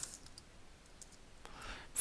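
A few faint, scattered computer keyboard keystrokes while text is typed into a field, then a soft breath near the end.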